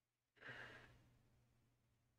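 A single sigh: a breath let out sharply about a third of a second in, fading away over about a second and a half.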